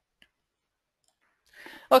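A single faint click, as of a mouse button advancing a presentation slide, then near silence. A man starts speaking right at the end.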